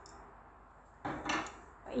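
A brief clatter of kitchenware being handled at the stove, starting about a second in and lasting about half a second.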